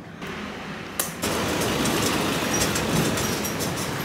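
Steady rush of street traffic, passing vehicles' engines and tyres, cutting in abruptly about a second in.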